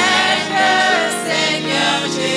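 A mixed choir of men and women singing a gospel song.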